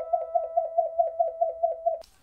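Electronic title-card sound effect: a short warbling tone repeating about four to five times a second over a steady higher hum, cutting off abruptly.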